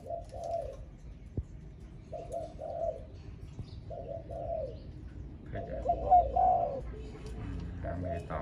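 Spotted dove cooing: four short phrases of low notes about two seconds apart, the last longer and louder than the others. A single sharp click sounds about a second and a half in.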